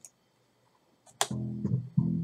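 Near silence, then a little over a second in a recorded bass riff starts playing back: low plucked notes with a sharp first attack.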